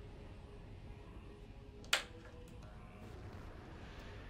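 Faint steady low hum of a quiet room, with one sharp click about two seconds in.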